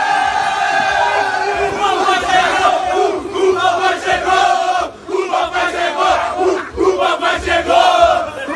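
A group of young men shouting and cheering together, jumping in celebration of a scored penalty, with a brief lull about five seconds in.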